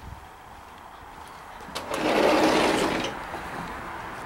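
A door, most likely a sliding patio door, rolling open with a rattly rumble lasting about a second, near the middle.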